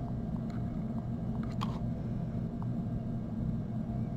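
A few faint, light taps of a fingertip on a tablet's touchscreen keyboard, spread out over a steady low hum.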